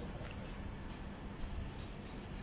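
Light rain falling on wet asphalt and puddles: a steady hiss with a few faint drips.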